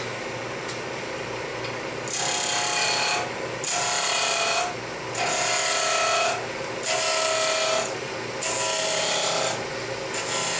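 Wood lathe running with a steady hum while a hand-held turning tool cuts into a spinning square glued-up block, rounding it down in five rough scraping passes of about a second each, starting about two seconds in.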